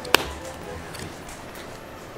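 A clear plastic dome lid snapped onto a plastic cup with one sharp click just after the start.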